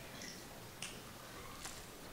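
Quiet room tone in a large hall, with two faint sharp clicks a little under a second apart.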